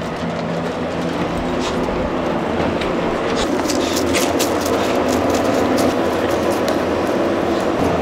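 Steady rumbling noise, with scattered light clicks from about three and a half seconds in.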